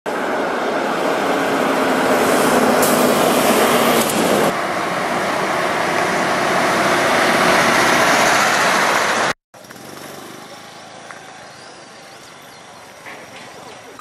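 Lorries driving on a paved road close to the microphone: loud, steady engine and tyre noise for about nine seconds, with a break about halfway. The noise cuts off suddenly to a much quieter outdoor background.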